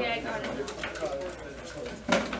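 Indistinct voices of students chatting in a classroom.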